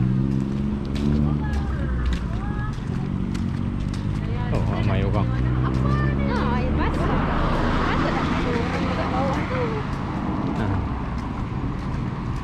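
Road traffic: a vehicle engine hum with steady low tones, and a car passing whose tyre noise swells about seven seconds in. Faint voices in the background.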